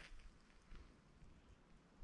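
Near silence, with one faint soft sound about three quarters of a second in.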